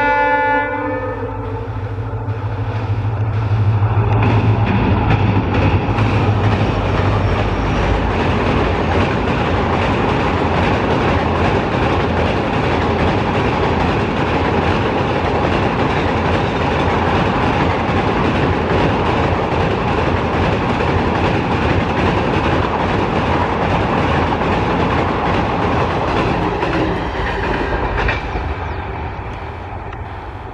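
A locomotive horn sounding and ending about a second in, then an express passenger train passing at high speed over a steel railway bridge: a loud steady rumble with the wheels clattering over the rails, fading near the end.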